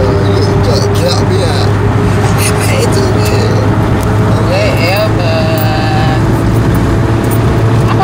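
Steady low engine and road drone heard from inside a moving car's cabin, with voices over it.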